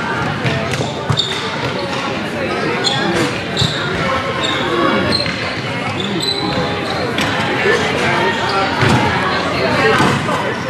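Spectators chattering indistinctly in a large echoing hall, with sharp knocks of indoor field hockey sticks hitting the ball a few times.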